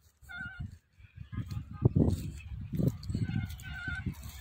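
A short, pitched animal call about a quarter of a second in, and again near the end, over irregular low thumps and rumble.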